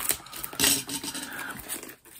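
Hands handling a Blu-ray box set: a few light knocks and scrapes of the box's card and plastic, the loudest a little over half a second in.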